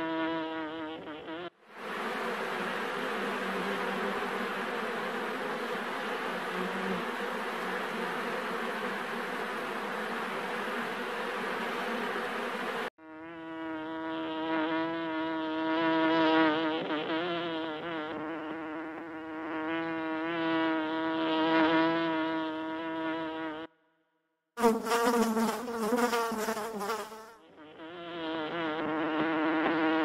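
Honey bees buzzing in several separate recordings cut together. A steady, pitched hum gives way after about two seconds to a dense, hissing swarm noise, and near the middle the pitched buzz returns, wavering in pitch and loudness. It breaks off for a moment about three-quarters of the way through, then resumes.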